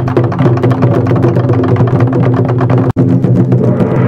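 Taiko ensemble playing nagadō-daiko (barrel taiko drums): a fast, dense run of stick strikes over steady low pitched tones, breaking off for an instant near three seconds in.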